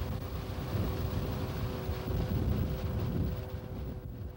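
LMC Sprite tracked snowcat's engine running steadily with a low rumble and a faint steady drone as the machine plows through snow drifts. Wind buffets the microphone.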